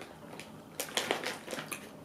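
Soft crinkling of a plastic candy bag being handled, a few short crackles about a second in.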